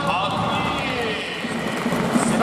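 Stadium PA announcer calling out a player in a long, drawn-out, echoing voice during the starting-lineup introduction, over crowd clapping in the stands.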